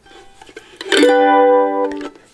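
Mandolin strumming a G chord (G and D strings open, A string at the second fret, E string at the third), starting about a second in. The chord rings at an even level for about a second and is then cut off.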